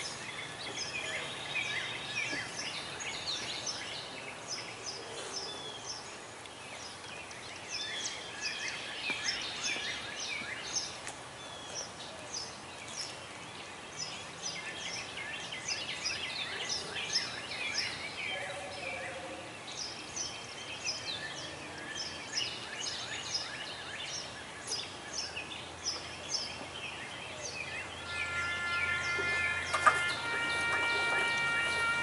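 Small birds chirping and singing over steady outdoor background noise, with many short, quick calls throughout. Near the end a sustained musical note with overtones begins.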